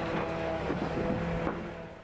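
Excavator diesel engine running at a steady pitch, fading out near the end.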